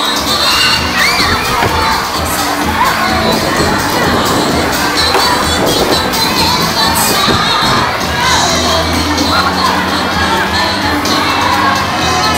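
A crowd of children shouting and cheering, many voices at once, loud and unbroken.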